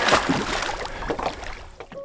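Lake water splashing as a swimmer slaps the surface with his arms, loudest just after the start and dying away over the next second or so.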